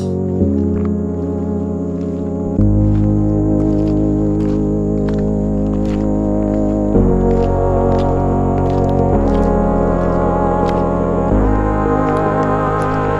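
Background music: held, organ-like chords that change every two to four seconds, over light ticking percussion.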